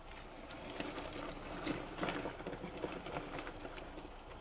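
Live adult mouse, held up by its tail, giving three short high squeaks about a second and a half in, over faint clicks and rustling.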